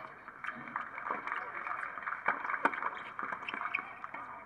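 Tennis rackets striking the ball during a doubles rally on a hard court: several sharp pocks, a second or less apart. Indistinct voices murmur underneath.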